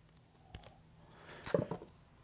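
Mostly quiet room tone with faint handling of a vinyl LP jacket as it is turned over: a light click about half a second in and a brief soft cluster of handling sounds near the end.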